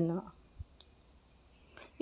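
Near silence with one faint click just under a second in; a voice trails off at the very start.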